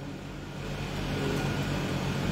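A steady low mechanical hum with background noise, slowly growing a little louder.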